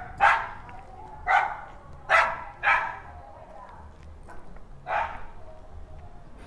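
Dogs barking: about five separate barks at uneven intervals.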